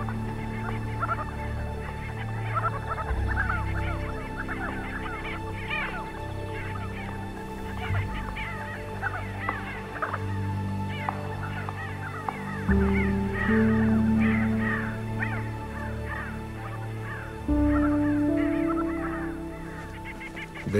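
A flock of sandgrouse in flight, giving many short overlapping calls throughout, over background music of held low notes.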